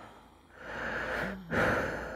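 A person breathing heavily: two long, breathy breaths, the first starting about half a second in and a louder second one at about a second and a half, with a brief voiced catch just before it.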